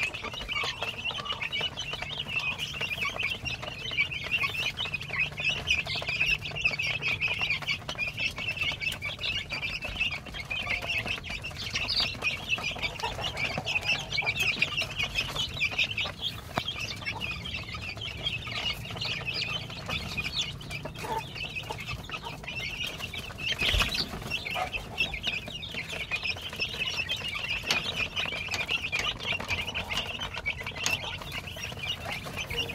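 A brood of young chicks peeping continuously, with many high calls overlapping. A low steady hum runs underneath, and a single brief thump comes late on.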